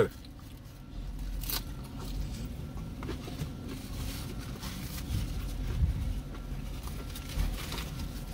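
A man chewing a mouthful of tostada, with soft rustling and handling noises and one sharp click about a second and a half in, over a low steady car-cabin rumble.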